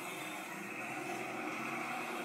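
Steady hum of street traffic from motorbikes and auto-rickshaws, with no single vehicle standing out.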